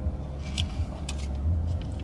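Low, steady rumble of a car's engine idling, heard from inside the cabin, with a few brief soft hissing sounds over it.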